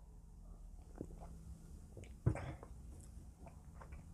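Faint mouth sounds of a man tasting beer from a glass mug: sipping, swallowing and small mouth clicks, with one louder short sound a little past halfway.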